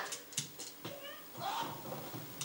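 Faint, brief voice sounds in a small room, with a few light clicks.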